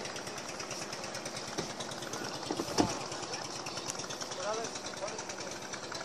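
An engine running steadily at a distance with a rapid, even pulse, with one sharp knock about three seconds in and faint voices a little later.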